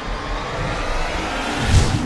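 Cinematic whoosh sound effect: a rushing swell that builds and peaks in a deep low hit near the end.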